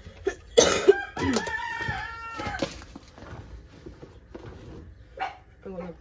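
A rooster crowing once, a pitched call of about a second and a half that rises, holds and falls away, just after a short loud noise about half a second in.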